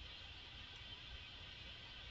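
Very quiet room tone: a faint steady hiss and low hum, with two tiny ticks about a second in.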